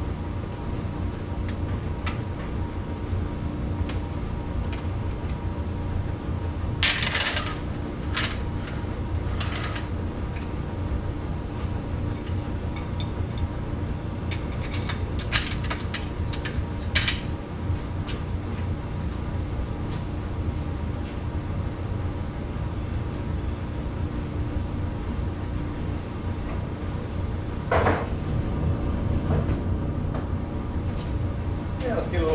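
Scattered metallic clanks and clinks of tools and a steel floor jack being handled, over a steady low hum.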